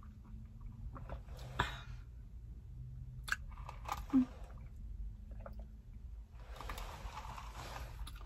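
Quiet sipping of an iced coffee drink through a plastic straw, with swallowing and a few small mouth clicks, over a faint low steady hum. A soft rustle of breath or sipping comes near the end.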